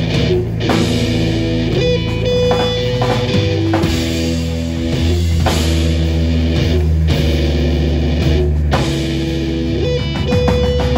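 Instrumental jazz-metal trio playing live: electric guitar, Bass VI and drum kit. Long held low notes are cut by several short, sharp stops in the riff.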